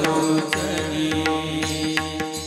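Marathi Varkari kirtan accompaniment: small brass hand cymbals (taal) clashing in a steady rhythm over a low drum beat and held harmonium notes, between sung lines.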